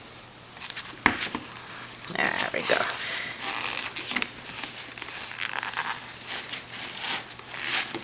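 Hands in thin plastic gloves mixing cornstarch and water in a plastic tub, giving an irregular crinkling and rustling with small crackles as the powder is worked into a paste. A single sharp knock comes about a second in.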